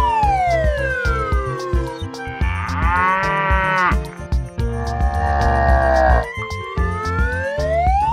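Two cattle moo sound effects, the first about two and a half seconds in and the second about five seconds in, over children's background music with a steady beat. A whistle-like tone glides down at the start, and another glides up near the end.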